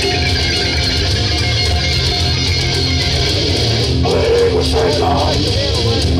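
Live heavy metal band playing loud, with distorted electric guitar, bass and drums; a vocal line comes in about four seconds in.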